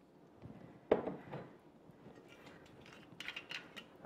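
Glassware being handled on a wooden counter: one sharp knock about a second in, as of a glass jar set down, with softer knocks around it, then a run of light clinks and taps.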